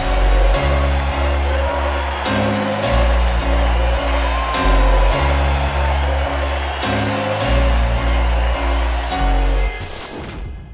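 Deep house / nu-disco dance track: a heavy bass line and a steady beat, dropping away sharply at the very end.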